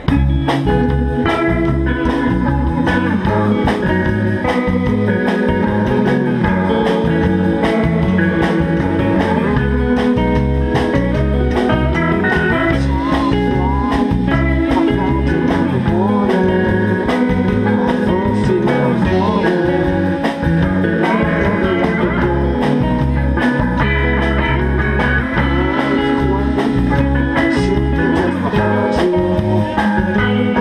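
A live rock band playing: electric guitars, electric bass and a drum kit, all coming in together at full volume right at the start and playing on steadily, with a brief dip in loudness about twenty seconds in.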